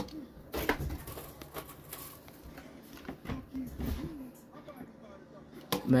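Faint, low talking with a few light clicks and knocks.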